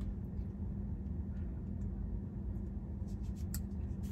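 Low steady hum of a car cabin, with a few faint clicks near the end as a lidded paper coffee cup is handled and sipped.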